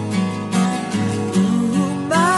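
Acoustic guitar strummed in an even rhythm, about two strums a second, with the chords ringing on between strokes.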